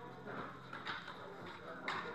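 A single sharp click of billiard balls striking, near the end, over low background talk.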